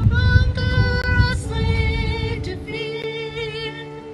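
Women's voices singing a hymn together in long held notes with a slight waver, over a low rumble that fades out about two-thirds of the way in.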